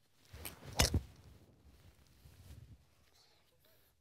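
Driver striking a golf ball off the tee: a sharp crack a little under a second in, with a fainter click just before it.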